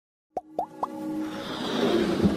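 Logo-intro sound effects: three quick plops, each bending upward in pitch, about a quarter second apart, followed by a swelling whoosh with a held musical tone that builds steadily.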